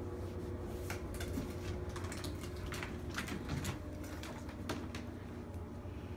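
A few light, irregular clicks and taps over a low steady hum: a plastic drinking straw being batted and skittering on a wooden floor by a Persian kitten.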